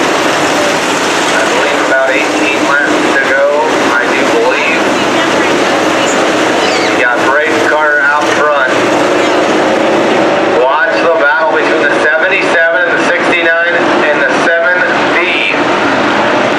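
Dirt-track sport modified race cars running under racing, their V8 engines making a loud, steady noise as the field passes, with a person's voice talking over it in the second half.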